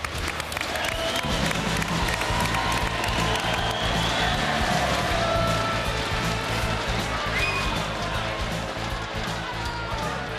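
Applause and cheering from a studio audience over background music, whose steady bass beat comes in about a second in.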